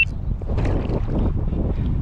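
Wind buffeting the action camera's microphone, a steady low rumble, with a GoPro's short high beep at the very start as it begins recording on a voice command.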